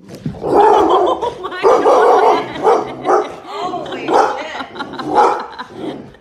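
A dog barking loudly and repeatedly in quick runs of barks, at a person crawling toward it in a dog mask.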